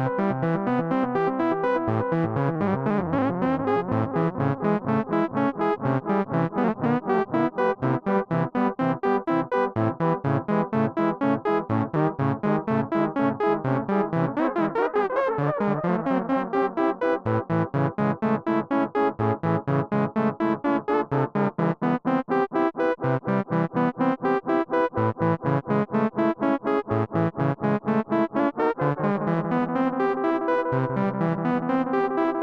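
Moog Grandmother synthesizer playing a fast repeating note pattern, with noise mixed in to sharpen the attacks, through an Eventide Rose delay set fully wet. As the delay knob is turned, the repeats bend up and down in pitch, in two strong sweeps a few seconds in and about halfway through.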